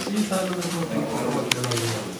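Men's voices talking at close range in a small room, in low tones, with a sharp click about one and a half seconds in.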